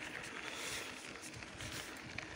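Steady low rush of a bicycle rolling along a rough road: tyre noise on the worn surface mixed with wind on the bike-mounted microphone.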